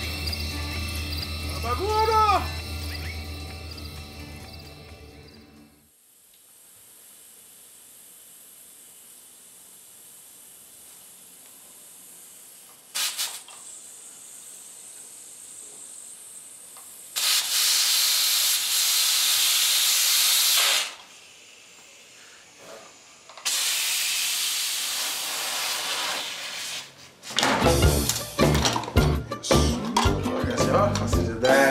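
Music fades out, then an aluminium stovetop pressure cooker hisses faintly before two loud, steady bursts of escaping steam, each about three and a half seconds long, as the weight valve is lifted to vent the pressure. Music comes back in near the end.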